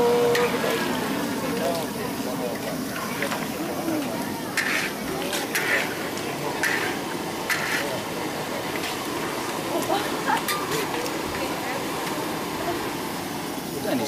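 Chicken hekka cooking in a large wok, a steady sizzle as it is stirred with a metal spatula and chopsticks, with a few short scrapes of the spatula against the wok about a second apart in the middle. Voices talk in the background.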